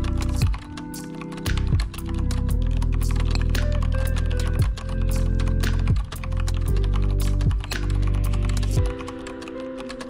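Rapid typing on a computer keyboard, a fast run of keystroke clicks, over background music with sustained low notes that change every second or so. The music's low notes drop away near the end.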